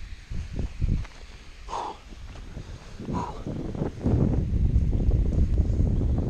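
Scattered low thumps and rustles of handling and footsteps on rock, then wind buffeting the camera microphone as a steady low rumble from about four seconds in.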